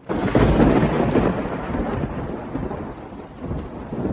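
Wind buffeting an outdoor camera microphone: a loud rushing rumble that starts abruptly and slowly eases.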